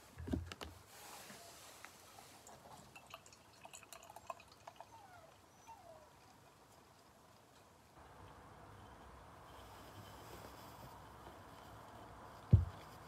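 Beer poured from an aluminium can into a glass, faint. A low thump comes right at the start, then scattered small clicks and gurgles, then a steady fizzing hiss from about eight seconds in as the glass fills and the head builds.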